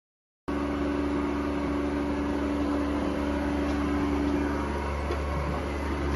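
Busch RA 0100 rotary vane vacuum pump on a Howden Mollervac 800 vacuum packing machine, running. It is a steady mechanical hum that starts suddenly about half a second in.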